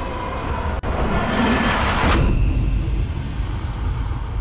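Film soundtrack rumble of an underground train running through a tunnel. A rushing noise swells and cuts off sharply about two seconds in, leaving the deep rumble and a thin steady high tone.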